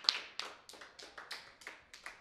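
Sparse applause from a small audience: single claps at about three a second, thinning and fading toward the end.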